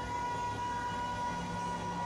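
A female pop singer holding one long, steady high note live, with a band sustaining underneath.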